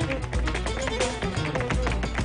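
Live flamenco music: guitar and a melody line over cajón and hand-drum percussion, with rapid sharp percussive strikes throughout.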